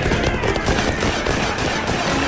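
Battle sound effects: rapid gunfire crackling, with a crowd of men yelling a war cry.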